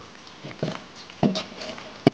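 A gloved hand squeezing and tossing cubes of pork belly in a wet marinade in a stainless steel bowl: an irregular run of wet squishes and light knocks against the metal.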